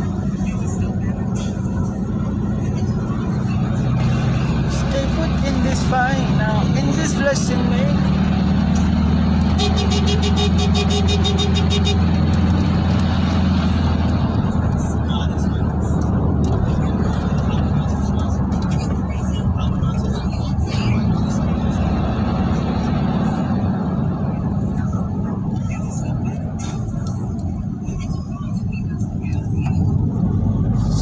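Steady engine and road drone heard inside a moving car's cabin, with faint, indistinct voices. About ten seconds in, a rapid ticking with a steady tone runs for about two seconds.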